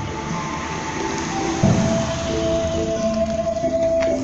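Music from a karakuri (mechanical puppet) clock's hourly show: held melody notes, with a low thump about a second and a half in.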